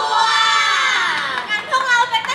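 Young women's voices shouting together through microphones and a PA: one long group call falling in pitch over about a second and a half, then short shouts.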